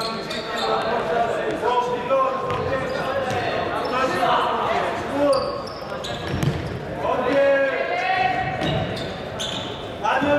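Futsal ball being kicked and bouncing on a wooden sports-hall floor in a large hall, with players' voices calling out across the court, loudest about seven to eight seconds in.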